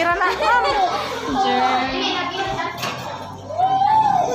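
Children's voices chattering and calling out, several at once, with a louder rising-and-falling call near the end.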